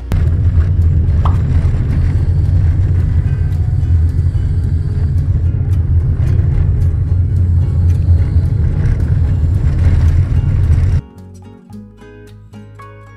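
Loud, steady low rumble of engine and road noise inside a Toyota taxi sedan driving on an unpaved road. It cuts off suddenly about eleven seconds in, and plucked-string music takes over.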